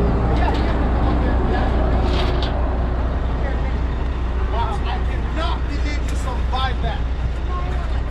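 Semi truck's diesel engine idling, a steady low drone, with people talking over it partway through.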